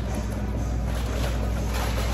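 A steady low rumble with an even hiss over it and no clear separate events.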